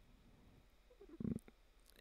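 Near silence: room tone in a pause between spoken phrases, with one brief faint low sound a little after a second in.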